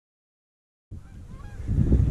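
Dead silence for about the first second, then wind rumbling on the microphone, with a few faint bird calls.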